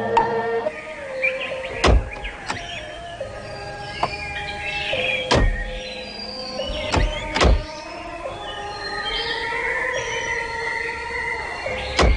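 Background music with a sustained melody. Through it come several heavy thunks, the doors of vintage cars being shut, a pair of them close together about seven seconds in.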